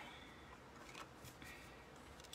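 Near silence: room tone, with a faint click about halfway through.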